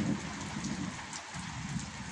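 Light rain falling steadily on garden plants, just enough to wet the grass, with a low rumble of distant thunder underneath.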